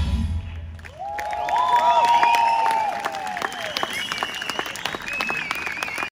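A rock band's last chord dies away in the first second. Then a concert audience applauds with separate, scattered claps, long cheering calls and whistles near the end.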